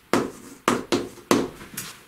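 Chalk writing on a chalkboard: about five short, sharp taps and scratches as strokes of the letters are made.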